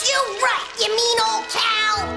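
A child's voice over background music in a cartoon soundtrack.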